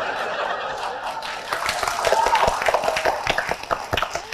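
Studio audience laughing and applauding, the clapping growing denser about a second and a half in.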